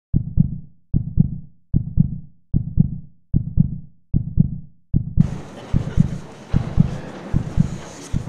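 Heartbeat sound effect: a steady double lub-dub thump, about 75 beats a minute. About five seconds in, a background hiss of room noise comes in under it.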